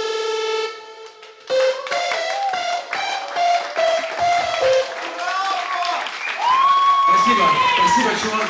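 A band's last chord held for under a second and cut off, then a small audience clapping and cheering, with shouted voices and a long whoop near the end.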